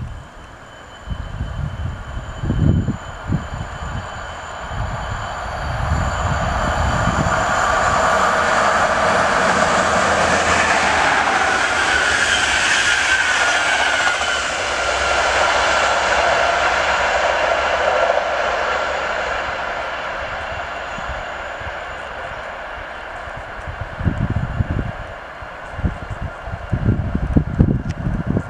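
Intercity express passenger train passing at speed on the electrified line. A rushing hiss of wheels on rails builds over several seconds, stays loud for about ten seconds as the coaches go by, then fades away. Wind buffets the microphone near the start and again near the end.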